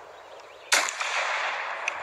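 A child making a gunshot sound with his mouth: a soft breathy hiss, then about three quarters of a second in a sudden loud, held 'pshhh' of forced breath.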